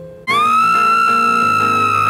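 A woman's very high-pitched scream held for about two seconds. It comes in suddenly with a short upward slide, then stays on one shrill pitch and cuts off abruptly. Soft piano music is heard just before it.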